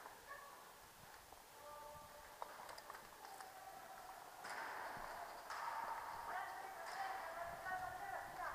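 Faint, distant human voices calling out, louder and more frequent in the second half, with a few faint clicks in between.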